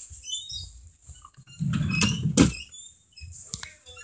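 Rummaging through things while searching: small clicks, squeaks and rustles of objects being moved, with a louder shuffle and knock about two seconds in.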